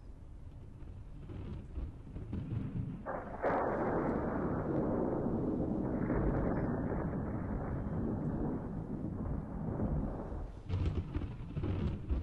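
Heavy rain with low rumbling thunder, a storm sound effect. It gets louder about three and a half seconds in.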